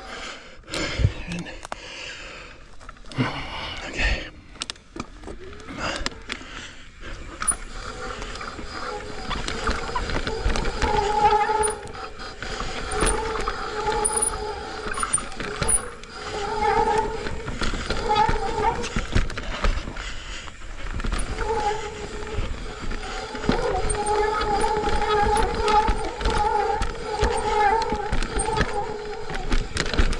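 Mountain bike riding fast down a dirt singletrack: tyre noise, rattles and knocks from the bike over bumps and roots, and wind on the chin-mounted microphone. From about eight seconds in, a steady buzz comes and goes.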